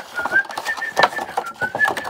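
A person whistling a steady, slightly wavering note through pursed lips, over the crinkling and rustling of clear plastic packaging being handled.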